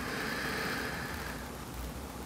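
A soft breath exhaled near a clip-on microphone, a faint hiss that fades out over about a second and a half.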